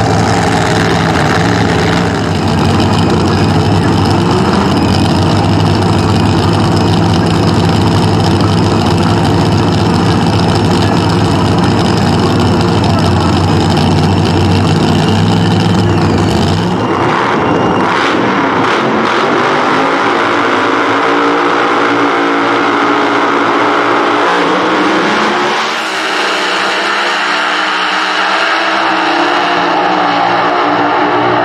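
Two Top Alcohol Funny Cars' alcohol-burning V8 engines running loud and steady at the starting line. About 17 seconds in they launch: the deep engine note gives way to a wide rushing noise that falls away as the cars race down the track.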